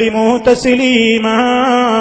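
A man's voice chanting a Quranic verse in melodic recitation style over a microphone, holding long, drawn-out notes on a steady pitch.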